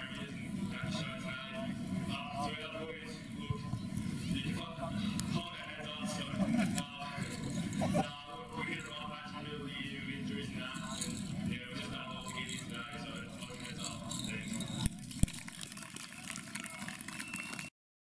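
A man speaking through a handheld microphone and public-address system, low in the mix under background music; the sound cuts out just before the end.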